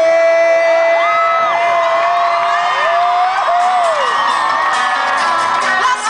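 Live country band music over an amphitheatre's sound system, heard from far back in the crowd, with a long held note in the first half and audience whoops and cheers over it.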